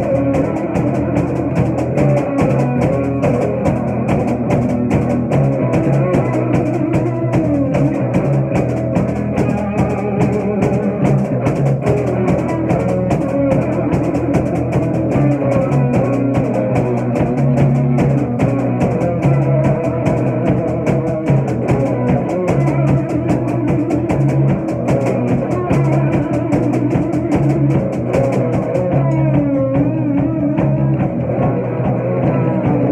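A live rock trio of electric guitar, bass guitar and drum kit playing an instrumental passage, with the drums and cymbals keeping a steady beat under the guitar.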